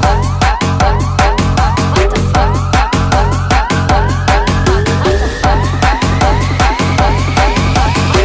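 Electronic dance remix with a steady beat and heavy bass, carrying short siren-like upward synth sweeps about twice a second. From about the middle, a long tone rises slowly in pitch, building up.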